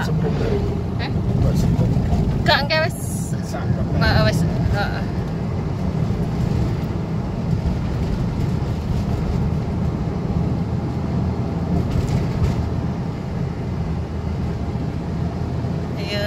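Steady low road and engine noise of a moving car, heard from inside the cabin, with a few brief voice fragments in the first five seconds.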